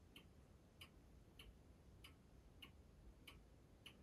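Near silence: room tone with faint, evenly spaced ticks, a little under two a second.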